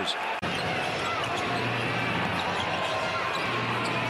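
Basketball being dribbled on a hardwood court over steady arena crowd noise, with faint voices. The sound drops out for an instant just under half a second in, at an edit, then carries on.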